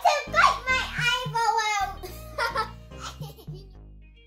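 Young girls laughing and chattering over background music with a stepping bass line; the voices die away in the last second.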